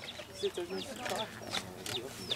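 Young chicks peeping: several short, high cheeps, each falling in pitch.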